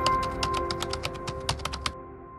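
Outro logo sting: a few held electronic tones fading out under a fast, even run of sharp clicks, about ten a second, that stop just before the end.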